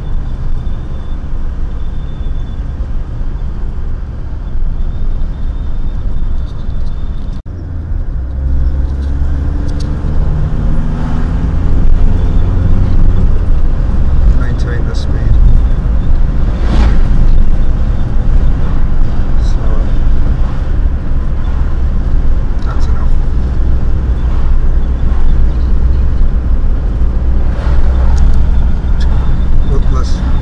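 Engine and road noise inside a moving car, with a sudden break about a quarter of the way in, after which the engine's pitch climbs for a few seconds as the car picks up speed. A louder rush of a passing vehicle comes just past the middle.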